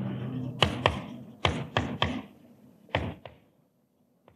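Chalk tapping on a blackboard while words are written: a run of sharp clicks in small groups that stops a little past three seconds in.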